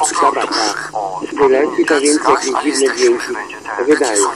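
Speech only: one voice talking continuously with a broadcast-radio sound.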